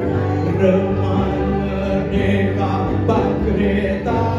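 Live band music: a man and a woman singing together over acoustic guitar and band accompaniment.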